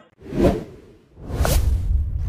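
Two whoosh sound effects of an animated logo sting. A short swish peaks about half a second in, then a longer one starts just past a second in and swells into a deep, sustained rumble.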